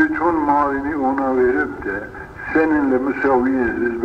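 A man's voice speaking without a break, from an old recording that sounds muffled and thin, with its high end cut off.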